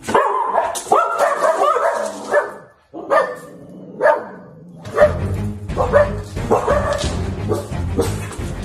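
Dog barking in alarm at a person in a dog-head mask: a quick volley of barks at first, then single barks about twice a second.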